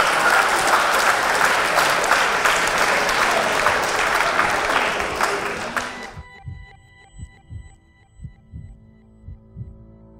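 Audience applause, dense clapping that cuts off abruptly about six seconds in. Quiet outro music follows, with soft low pulses about two a second under held notes.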